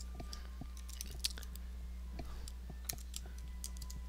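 Computer keyboard typing: about a dozen soft, irregular keystrokes over a steady low electrical hum.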